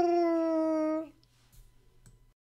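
One long held note from a voice, steady and falling slightly in pitch, which stops about a second in.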